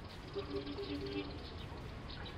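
Outdoor ambience with small birds chirping faintly, and a short broken run of two steady low tones starting about half a second in and lasting about a second.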